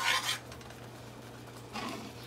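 A metal slotted spatula scraping through thick cream sauce in a frying pan: one short scrape at the start and a faint one near the end, with a low steady hum underneath.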